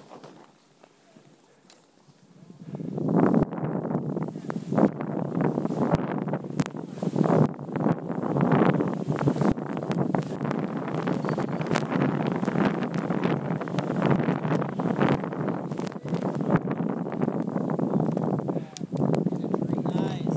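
Skis running fast through deep powder snow with wind rushing over the camera microphone. After a quiet start it becomes a loud, continuous rushing noise about two and a half seconds in, broken by irregular thumps and rattles.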